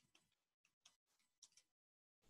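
Faint, irregular clicks of typing on a computer keyboard, a few keystrokes with short gaps between them.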